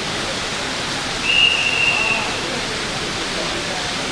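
Heavy rain falling steadily. Near the middle, a thin, high, steady whistle-like tone sounds for about a second.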